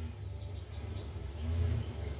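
Quiet background: faint, short high chirps like small birds over a low steady hum.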